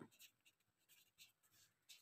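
Faint scratching of a felt-tip pen writing on paper, barely above silence.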